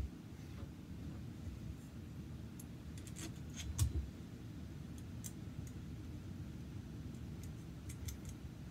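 Metal parts of a homemade pneumatic rifle being handled and fitted together: a few light clicks and taps, most of them three to four seconds in, with a soft knock near four seconds. Under them runs a low, steady background hum.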